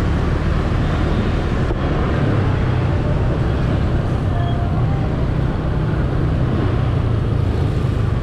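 A motor scooter riding through city traffic: its engine and road noise make a steady low rumble, mixed with the surrounding traffic, with no sudden events.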